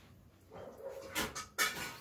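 Paper rustling as a notebook page is turned, in two short bursts about a second apart.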